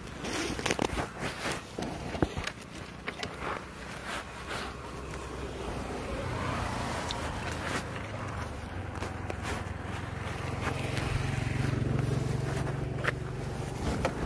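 A small motorcycle engine running, its low hum growing louder through the second half, with scraping and knocking of the load and handlebars in the first few seconds.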